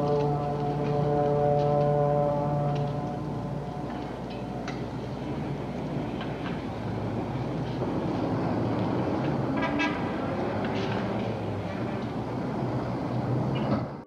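A distant low horn sounds one steady note for about three seconds. After it comes a steady background rumble with scattered faint clicks.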